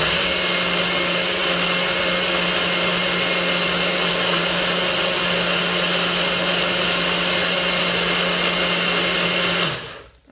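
Nutribullet blender running steadily, blending a smoothie with frozen raspberries, then cutting off shortly before the end.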